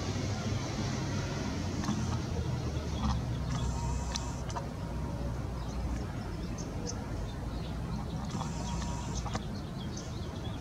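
Steady low background rumble with a few faint scattered clicks.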